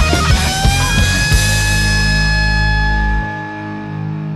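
Rock music with drums and electric guitar. From about a second in, a long chord is held and rings on, and its low bass drops away near the end.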